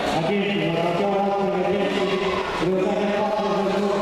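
Voices chanting in long, steady held notes that change pitch every second or two.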